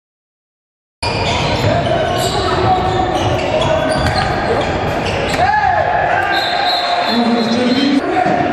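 Live sound of a handball game in a sports hall, starting abruptly about a second in after silence. The ball bounces on the wooden floor, shoes squeak in short high notes, and players' voices echo in the hall.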